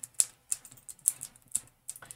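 Foam pouncer dabbing etching paste through a screen stencil onto a glass casserole dish: a run of light, irregular taps, several a second.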